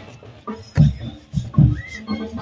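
Marching band drums beating alone after the brass cuts off: a few heavy bass drum hits over lighter percussion, with a short rising-and-falling high call near the end.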